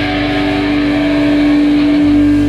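Amplified electric guitar holding one steady, ringing note with no strumming or beat.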